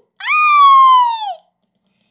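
A child's high-pitched vocal squeal, one call about a second long that drops in pitch at the end: the "choo" of a pretend sneeze after its "ah, ah" build-up.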